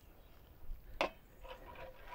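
A sharp metallic tap about a second in, then a wire whisk scraping in rhythm against a cast iron skillet as a roux is stirred.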